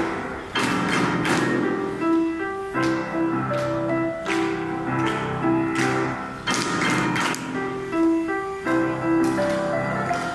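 Grand piano played solo: a Malay song from 1938, a melody over held chords with firmly struck notes every second or so.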